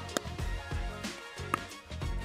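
Background music, with two sharp pops of a pickleball struck by paddles in a rally, one near the start and one about a second and a half in.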